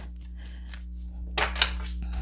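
Oracle cards being handled and shuffled by hand: a few soft card clicks and rustles about a second and a half in, over a steady low hum.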